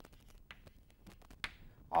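Chalk on a blackboard while writing, giving a quick, uneven series of short sharp taps and clicks.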